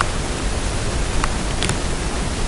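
Steady background hiss of the recording, with two faint ticks in the second half.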